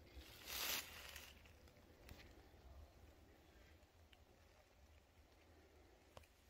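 A brief rustle about half a second in, then near silence with only a faint low background hum.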